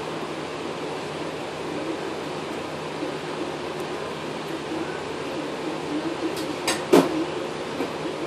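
Steady mechanical hum of the workshop background, with a few sharp clicks of handled metal parts or tools near the end, the loudest about seven seconds in.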